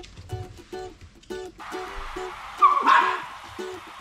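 Young Welsh Terrier giving a short bark about two-thirds of the way in, over background music.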